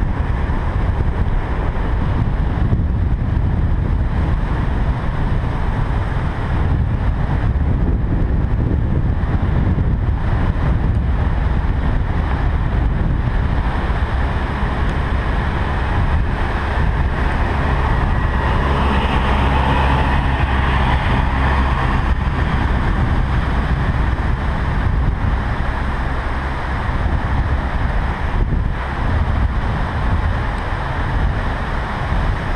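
Wind rushing steadily over the microphone of a camera riding on a moving bicycle. A humming tone swells up a little past the middle and fades a few seconds later.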